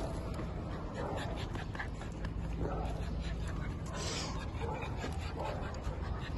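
A dog panting and whimpering as it is hugged and greets a person, with faint scuffling and clicks and a short breathy rush about four seconds in.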